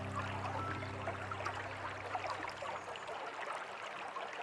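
A stream of running water, trickling and dripping steadily, as the last held notes of soft music fade out over the first three seconds.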